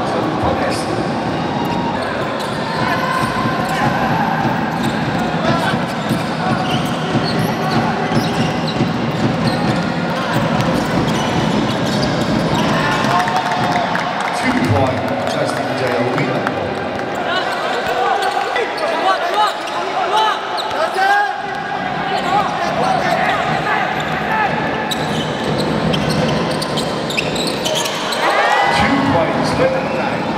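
Live indoor basketball play on a hardwood court: the ball bouncing as it is dribbled and players' sneakers squeaking in short bursts, with voices echoing in the hall.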